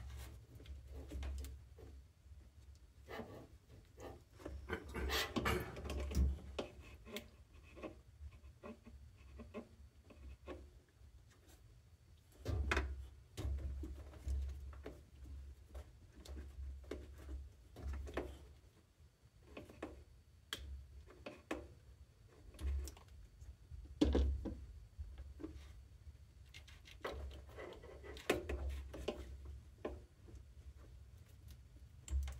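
Hands working rubber hoses onto the outlets of a plastic washing-machine water inlet valve: irregular rubbing, scraping and light clicks of rubber on plastic, with dull low thumps in clusters.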